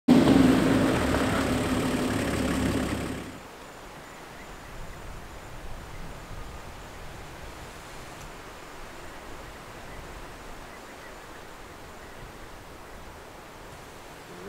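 A safari vehicle's engine runs loudly with a steady low hum for about three seconds. It cuts off suddenly to faint outdoor ambience with no distinct sounds.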